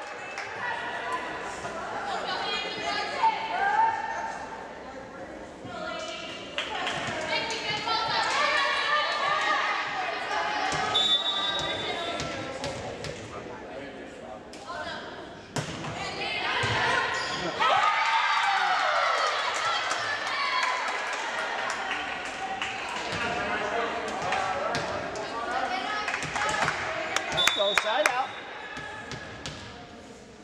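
Volleyball rally echoing in a gymnasium: the ball is struck and hits the floor several times, over players and spectators shouting and cheering. Two short high whistle blasts sound, near the middle and near the end.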